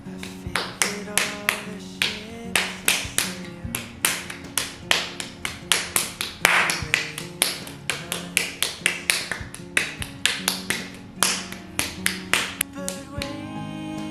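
Rapid, sharp slaps of a small ball of marbled porcelain clay patted between the palms, about three a second, over background guitar music. The slapping stops about a second before the end.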